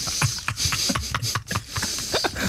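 Stifled laughter from a person holding a mouthful of water, coming as short irregular splutters with hissing spray as the water escapes.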